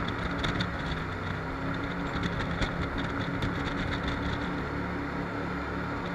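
Jet boat under way at speed: a steady engine drone with the rush of water and air over the open boat, even in level throughout.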